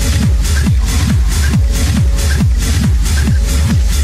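Techno with a steady four-on-the-floor kick drum at about two beats a second, each kick dropping in pitch, and hissing hi-hats between the kicks.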